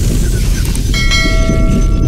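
A bell-like chime sound effect enters about a second in and rings with several clear steady tones to the end, over a loud, steady deep bass rumble.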